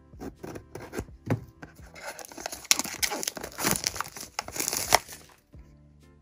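Thin plastic shrink wrap on a cardboard blind box being slit with a small blade and pulled off. A few light scratches and clicks come first, then about three seconds of loud crinkling and tearing.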